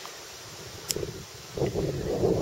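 Wind buffeting the camera's microphone as a low rumble, with a single click about a second in and stronger gusts over the last half-second.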